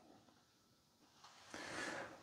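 Near silence, then a faint short hiss in the last half second.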